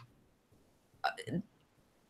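Near silence, broken about a second in by a short vocal sound from a person: two quick sounds, the second rising in pitch.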